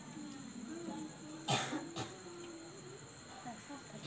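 Faint background voices of several people talking quietly, with a short, loud noisy burst about a second and a half in and a sharp click half a second later.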